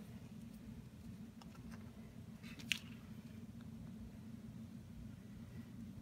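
Quiet room tone with a steady low hum and a few faint clicks; one sharper tick with a brief ring comes about two and a half seconds in.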